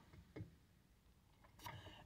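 Near silence: quiet room tone with two faint, brief clicks, one shortly after the start and one near the end.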